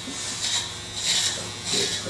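Electric hair clippers running with a steady hum and cutting through thick hair in about four strokes, each stroke a brief rise in buzzing and rasping.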